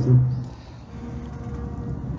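A man's spoken question ends, then a pause with only faint room noise and a low steady hum.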